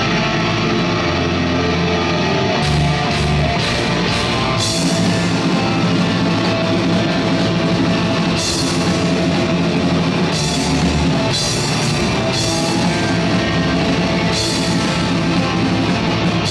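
Heavy metal band playing live: distorted electric guitars and bass, with the drum kit and cymbal crashes coming in about three seconds in and the full band playing on.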